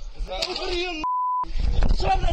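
A short, steady single-pitch censor bleep, under half a second long, about a second in, blanking out a swear word in a heated, shouted argument.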